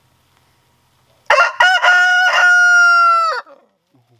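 A rooster crowing loudly: a few short broken notes, then one long held note, the whole crow lasting about two seconds and starting about a second in.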